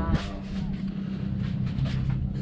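Fishing boat's engine running steadily, a low even drone heard inside the wheelhouse.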